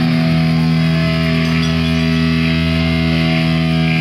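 Distorted electric guitar through the PA holding one steady, droning chord.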